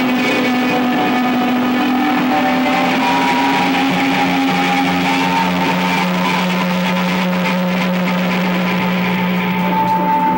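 Live band music: electric guitars holding long, sustained notes over a steady low note, with no drum hits.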